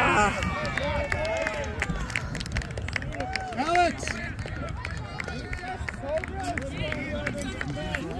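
Voices of players and spectators shouting and calling out across an outdoor soccer field, with one loud shout at the start and another about four seconds in.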